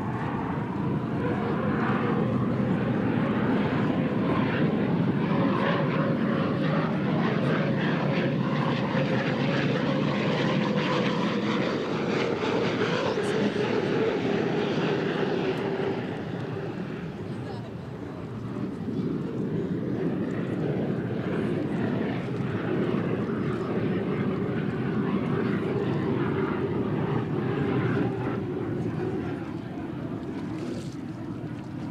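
Unlimited hydroplanes racing past at speed: a loud, steady engine whine with a held tone that slides slightly lower in pitch as the boat goes by. The sound dips briefly a little past the halfway point, then swells again as the boats come round.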